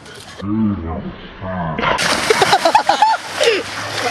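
Young men's voices: a low voice near the start, then loud shouting and yelling from about two seconds in over a rush of water as someone goes into a swimming pool.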